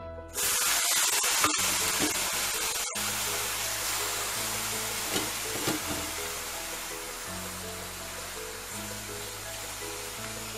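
Coriander leaves hitting hot oil in a metal kadai, sizzling loudly from about half a second in and slowly dying down as they begin to wilt. Background music plays underneath.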